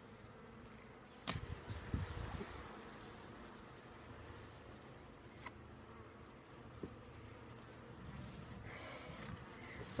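Faint steady hum of a strong honeybee colony from an opened hive. A sharp knock and a few low thumps come a little over a second in, as the wooden inner cover is lifted off.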